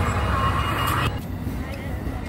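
Amtrak Pacific Surfliner bilevel passenger train rolling slowly along the platform: a steady low rumble with a higher hiss of wheels on rail. The hiss cuts off about a second in, leaving a quieter rumble.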